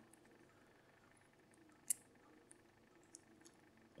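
Near silence with a few faint small metallic clicks, the sharpest about two seconds in: the Miwa DS wafer-lock core and its inserted key shifting in the fingers.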